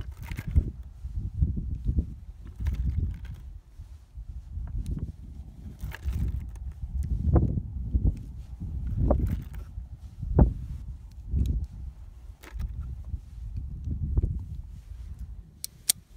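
Smith & Wesson Model 17-3 .22 LR revolver being loaded by hand: several small, sharp clicks as cartridges are set into the chambers of the open cylinder, spread out over the stretch. Under them runs a low, uneven rumble on the microphone.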